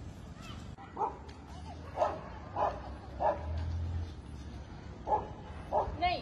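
A dog yipping: six short, high barks about a second apart.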